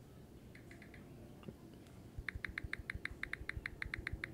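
Samsung keyboard key-press sounds from a Samsung Galaxy A55 5G's speaker as someone types on its touchscreen. A few faint clicks come first, then from a little after halfway a quick, even run of about six or seven clicks a second.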